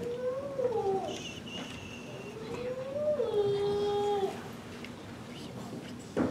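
A small child's voice making two drawn-out, wavering calls, the second ending in a held note, with a brief high squeal between them.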